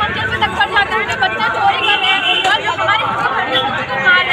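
Speech: a young woman talking close to a handheld microphone, with other people's voices chattering around her.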